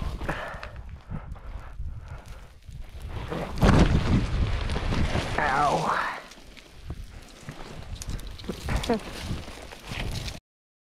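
Boots scuffing and sliding down a steep slope of loose dirt and gravel, with crunching steps and small stones skittering; the scraping is loudest for a few seconds through the middle.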